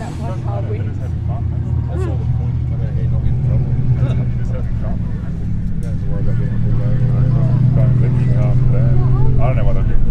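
Racing car engines at speed: a steady low drone that grows louder as the cars come closer, with a brief dip about six seconds in, while people talk nearby.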